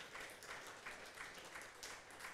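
Audience applauding, faint and steady.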